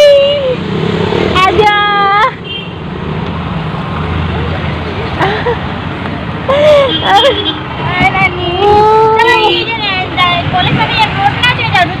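People's voices talking and calling out in short spells over a steady low rumble of vehicle and street noise.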